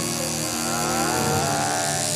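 Coil tattoo machine buzzing steadily as it runs, with a shift in pitch about a second in.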